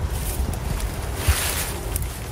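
Wind buffeting the microphone in uneven low gusts, with a rustle of leafy vines being pulled through the plants a little past the middle.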